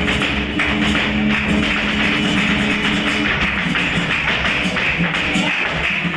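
Live flamenco: rhythmic palmas (hand clapping) and a dancer's footwork over flamenco guitar.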